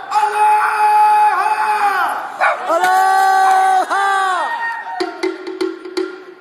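Conch shell trumpet (pū) blown in three long held blasts, each sagging in pitch as it ends. Near the end, percussion strikes start.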